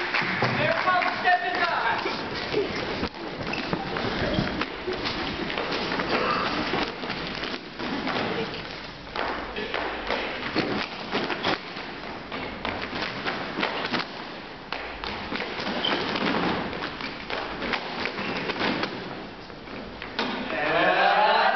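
Dancers' feet stomping and tapping on a stage in a fast, uneven patter of thumps, with voices calling out in the first couple of seconds.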